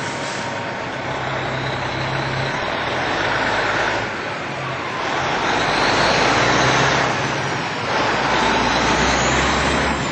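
Road traffic: several vehicles driving past close by one after another, each one's tyre and engine noise swelling and fading.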